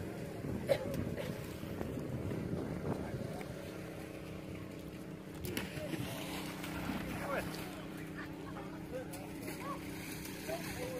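A small engine running steadily with an even hum, with faint distant voices of people at times and a single sharp knock under a second in.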